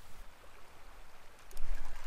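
A stream flowing, a soft steady hiss of running water. About one and a half seconds in, louder clicking and rustling with a low rumble come in over it.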